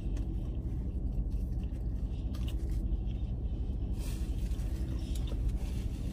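Steady low rumble inside a parked car's cabin, with the engine running. A few faint small clicks and rustles are heard over it.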